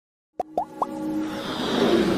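Electronic logo intro sting: three quick upward-gliding blips in a row, then a swelling riser that builds in loudness.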